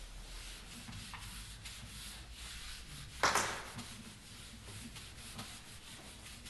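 A whiteboard being wiped with an eraser: a run of rubbing strokes across the board, with one short, louder swipe a little past halfway.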